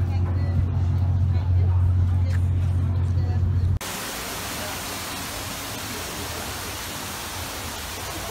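A loud, steady low hum with faint voices, which cuts off suddenly about four seconds in and gives way to a steady, even hiss.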